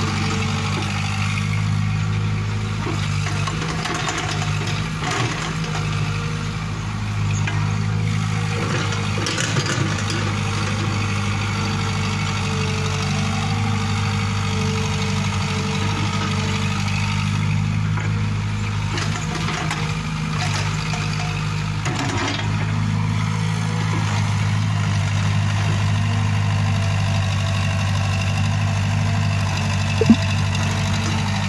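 CAT tracked excavator's diesel engine running steadily as it digs and loads soil, with occasional short knocks and clatters from the bucket and falling earth.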